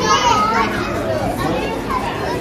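Children's voices chattering and calling out over the general hubbub of a crowded hall, loudest just at the start.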